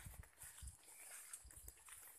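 Faint footsteps on soft, muddy garden soil: three dull low thuds, roughly half a second to a second apart, over a faint high hiss.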